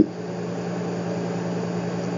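A steady low hum with an even hiss underneath: continuous room tone from something running in the room.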